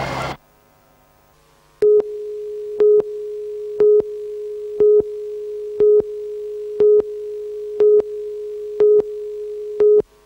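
Broadcast tape countdown leader: after a short silence, a steady single line-up tone with a short, louder beep every second, nine beeps in all, counting down to the next news item.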